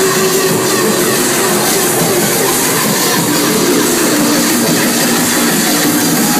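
Drum and bass club music played loud over a club sound system, heard as a dense, even wash of noise with no clear beat.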